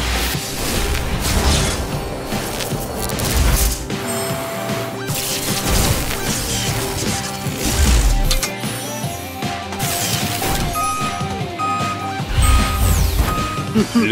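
Cartoon transformation sound effects over loud, energetic music: repeated mechanical clanks and impacts with several heavy low booms, and a run of short electronic beeps near the end.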